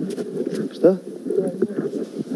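Heavily muffled voices talking, the words too dull to make out.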